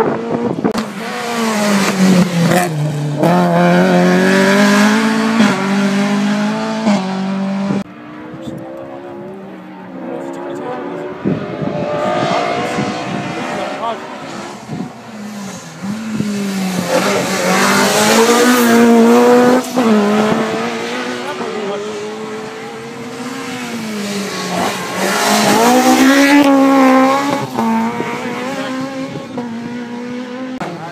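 Rally car engines revving hard as cars go through a stage, pitch climbing and dropping again several times with gear changes and lifts. The sound cuts abruptly about eight seconds in, where one clip ends and another begins.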